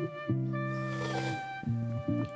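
A man humming a long, steady closed-mouth "mmm" of appreciation as he tastes a spoonful of soup broth, over background music.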